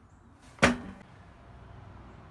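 A single sharp wooden knock about half a second in, with a short ring after it: the freshly cut pine shim board striking the table saw.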